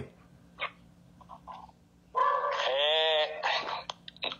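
A long drawn-out vocal sound, about a second and a half, whose pitch sags and rises again partway through, heard over the phone call's speaker about halfway in. A few faint short sounds come before it.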